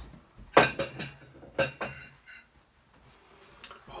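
A few sharp clinks and knocks of crockery and cutlery, the loudest about half a second in, a pair around one and a half seconds, and one more near the end.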